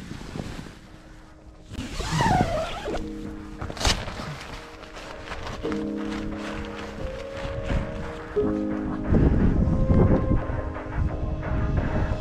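Background music of held chords that change every couple of seconds, over a low rushing noise.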